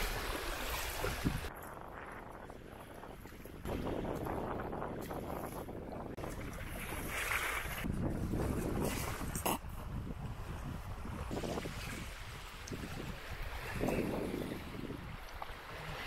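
Wind buffeting the microphone over river water splashing and lapping in the shallows, swelling and easing in gusts.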